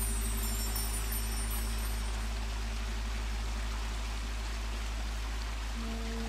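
A quiet passage of meditative background music: a steady low drone with faint held tones over an even hiss.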